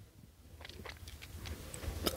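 A pause between spoken sentences: faint room noise with a low rumble and a few soft clicks, growing slightly busier toward the end.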